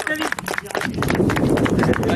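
A small group clapping, with many quick, irregular hand claps and voices chattering underneath that grow from about a second in.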